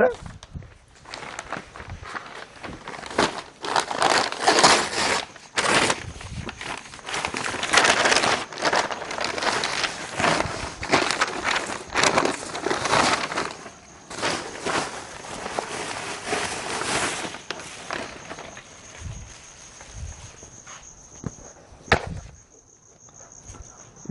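Large brown paper bag rustling and crinkling in bursts as it is handled and opened, easing off in the last few seconds. Crickets chirp as a steady high tone in the later part, and there is a single sharp knock near the end.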